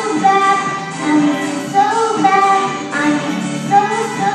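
Children singing a pop song into handheld microphones, with backing music.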